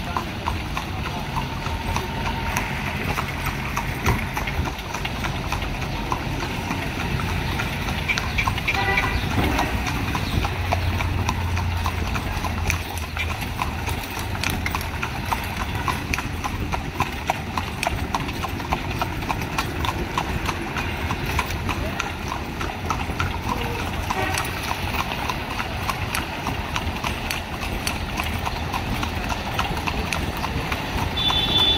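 A carriage horse's hooves clip-clopping steadily on a wet paved street as it pulls a horse-drawn carriage.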